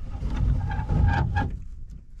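Rear side window of a 1935 Ford Tudor being wound by its hand crank: a low rumbling scrape of the glass in its channel with a faint squeal, plus a couple of clicks, fading out near the end.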